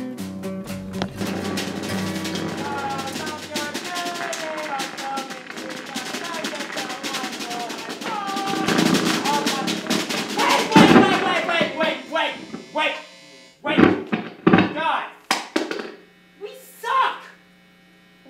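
A band playing loosely: electric guitar notes, some bending in pitch, over rapid clattering drum hits. In the second half the playing breaks up into a few separate loud bursts with short gaps between them.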